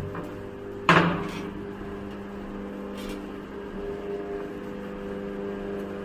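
Steady electrical hum of power-station equipment, a low drone made of several steady tones. About a second in, a single loud bang that rings off quickly.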